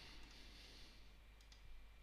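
Near silence: room tone with a couple of faint computer mouse clicks.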